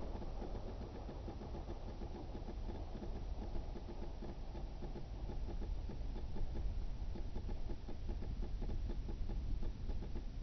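Piper Cub's engine running with a low, steady drone as the plane settles onto grass to land.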